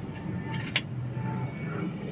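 A sharp metallic click as a steel bushing is set into a truck leaf-spring eye, about three-quarters of a second in, with a fainter tap later, over a steady low hum.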